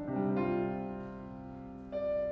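Solo grand piano playing a slow piece. Chords are struck at the start, about half a second in and again near the end, each left to ring and fade.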